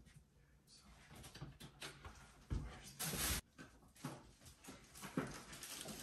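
Handling noises of packaging and paper being moved about: scattered faint clicks and rustles, with one brief loud rustle about three seconds in.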